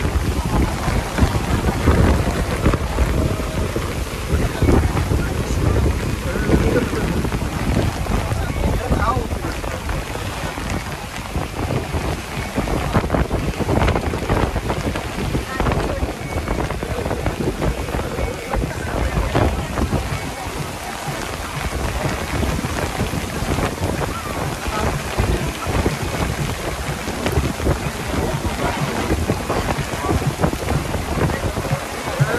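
Heavy rain and strong gusting wind in a thunderstorm, the rain pelting a boat's deck and the wind buffeting the microphone in a steady low rumble.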